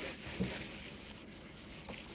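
Whiteboard eraser wiped back and forth across a whiteboard, a faint rubbing, with one soft knock about half a second in.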